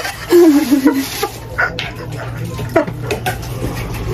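A woman's brief wavering laugh near the start, followed by several light clinks and knocks of glassware and dishes.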